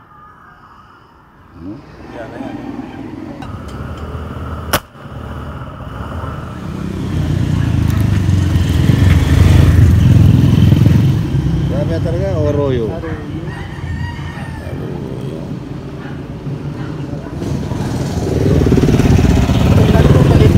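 A single sharp shot from a scoped fishing gun, about five seconds in, as a fish below the bridge is hit. Around it, a loud low rumble of passing vehicles builds and swells twice, with brief shouts in between.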